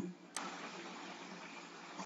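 Faint steady hiss of microphone and room noise, with a single short click about a third of a second in.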